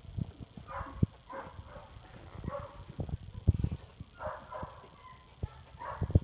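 Two-and-a-half-week-old puppies whimpering in short, high cries, about half a dozen over a few seconds, with low thumps and bumps underneath.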